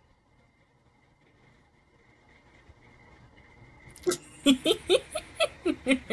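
Low room hum, then about four seconds in a burst of laughter: a quick run of short, loud bursts of voice, about four a second.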